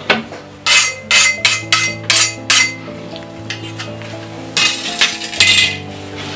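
Machete blade scraped in quick, harsh strokes: about eight in a rapid run, a short pause, then two or three longer scrapes near the end. Steady background music runs underneath.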